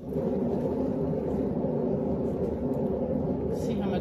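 A paint spinner starting abruptly and running at a steady speed, turning a wet acrylic pour canvas: a steady rumbling whir.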